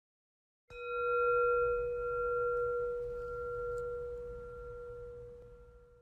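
A single struck bell, ringing with a clear tone and a few higher overtones, slowly fading away over about five seconds.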